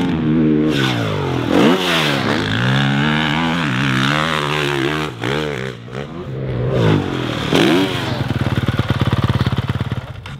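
Honda CRF450 four-stroke motocross bike ridden hard round a dirt track, its engine revving up and dropping back again and again as the rider accelerates, shifts and backs off for jumps. Near the end it settles into a steady, low, rapidly pulsing note.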